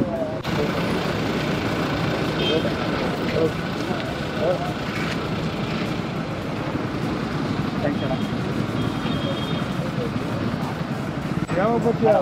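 Steady low rumble of a nearby motor vehicle or road traffic, with muffled, indistinct voices.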